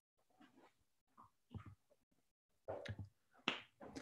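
Near silence, broken by a few faint short clicks in the second half.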